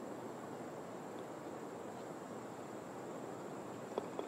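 Faint steady outdoor background hiss, with a single soft click near the end as a putter strikes a golf ball.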